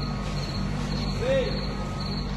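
Crickets chirping in a steady rhythm, about two high chirps a second, over a low steady hum.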